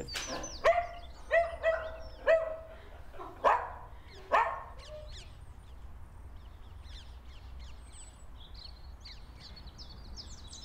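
A dog barking about seven times in short, sharp barks over the first four or five seconds, the last two falling in pitch. After that, small birds chirp faintly.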